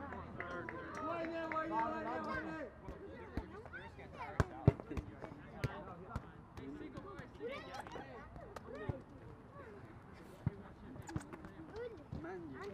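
Players' voices calling out, with a long held call over the first two to three seconds and scattered shouts later. Two sharp thumps about four and a half seconds in are the loudest sounds, among lighter clicks and knocks.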